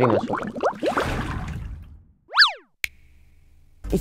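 A short synthetic swoop sound effect: a tone sweeps quickly up and straight back down in under half a second, then a single sharp click. It is an editing transition effect.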